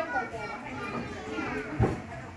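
Children's high voices chattering and calling, with a single sharp thump near the end.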